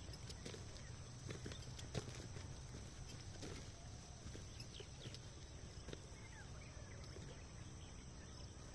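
Faint outdoor farm-field sound with a few short animal calls and scattered soft knocks, the sharpest knock about two seconds in, over a steady low rumble.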